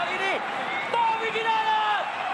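Excited football commentary: a man's voice stretching words into long, held calls over steady stadium background noise.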